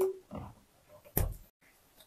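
Inflated latex balloon squeaking briefly as it is handled at the neck while being tied off, then a faint rustle and a single sharp click a little past a second in.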